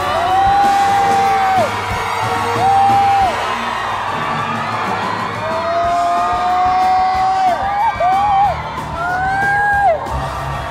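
Background music with about five long, high shrieks from people, each held for up to two seconds and dropping off at the end.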